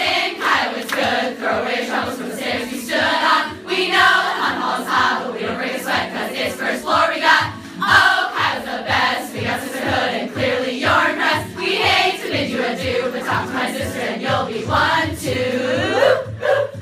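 A large group of young women singing a song together as one choir, with a steady beat of sharp taps underneath.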